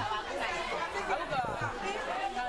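Speech only: a woman talking to a class, with the chatter of students around her.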